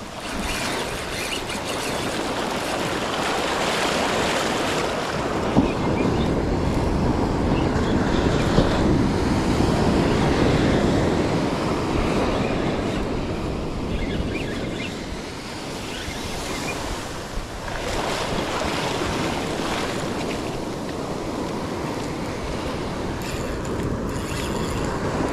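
Surf washing in and out over a sandy beach, the wash swelling and easing over several seconds, with wind buffeting the microphone.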